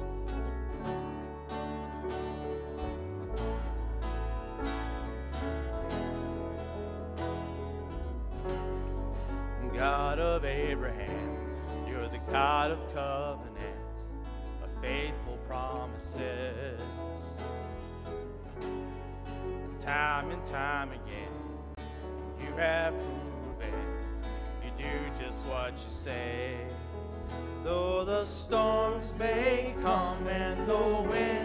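Live worship band playing a song intro: steady strumming on a steel-string acoustic guitar over low bass notes. A wavering melody line with vibrato joins at intervals from about ten seconds in.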